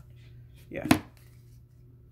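A single sharp click or tap just before a second in, over a faint steady low hum, as a woman says "yeah".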